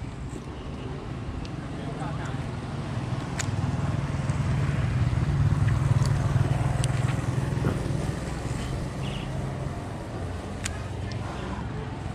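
A motor vehicle's engine passing close by on the road, its low drone building to its loudest about halfway through and then fading away.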